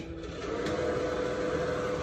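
Steady mechanical whir with a faint, even humming tone, typical of a fan or air-handling unit running. It begins with a single click.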